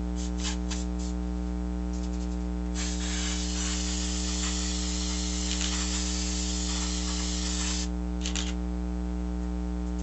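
Aerosol can of spray adhesive hissing in one continuous spray of about five seconds, starting a few seconds in, over a steady electrical hum. A few short clicks come near the start and just after the spray.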